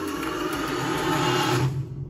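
Soundtrack of a GoPro HERO10 Black commercial: a dense rushing sound effect over a low hum, building slightly and then cutting off sharply just before the end.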